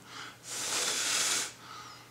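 A breath blown out for about a second, a soft hiss, onto a freshly soldered battery-lead pin to cool the solder joint.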